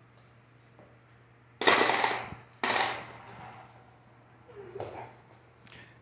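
Glass marbles flicked and rolling across a hard floor: two loud clattering rolls about a second apart, each dying away, then a fainter one near the end.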